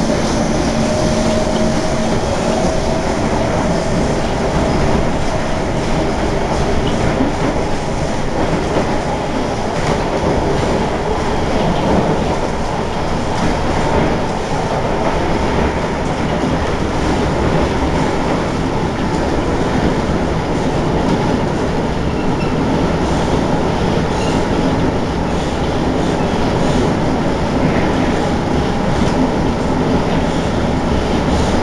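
SMRT C151 metro train running at speed on elevated track, heard from inside the carriage: a steady rumble of wheels on rail, with a faint whine rising in pitch over the first few seconds.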